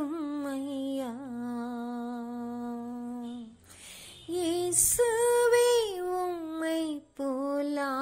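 A woman singing a Tamil Christian worship song, drawing out long held notes with a slight waver. There is a brief pause a little past halfway, then she carries on with more sustained notes.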